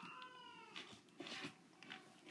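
A faint, high-pitched drawn-out call that rises a little then falls and ends in the first second, followed by a few soft rustling and handling noises.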